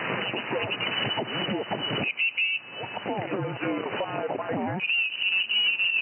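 Single-sideband voice signals from amateur radio stations on the 20 m band, received on an SDRplay RSP1 software-defined radio as it is tuned up the band. The voices sound narrow and telephone-like and switch abruptly about two seconds in, with a high warbling whine from another signal near the end.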